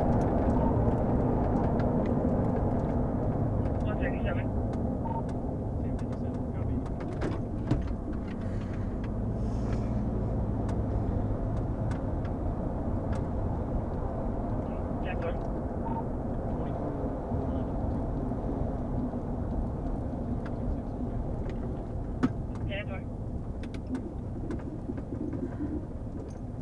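Patrol vehicle driving: a steady low road and engine rumble heard inside the cabin, easing off gradually as the vehicle slows.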